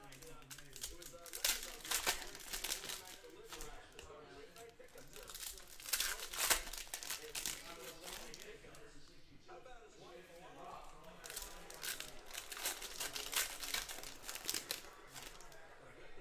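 Foil trading-card pack wrappers being torn open and crinkled by hand, in bursts of crinkling and tearing: about a second and a half in, around six seconds in, and again through most of the last five seconds, with quieter handling between.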